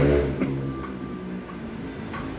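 A man's voice trails off, a short click follows, and then a low steady background hum carries on in the room.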